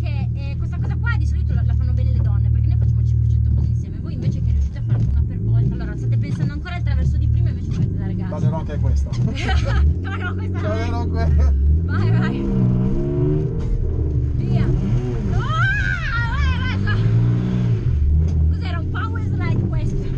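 A drift car's engine heard from inside the cabin. It drones steadily for the first few seconds, then revs up and down repeatedly in the second half.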